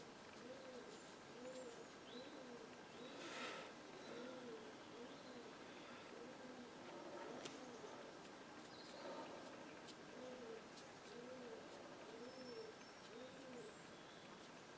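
Faint bird calls: a low rising-and-falling call repeated evenly, about one and a half times a second, with a few faint high chirps. A brief rustle comes a little over three seconds in.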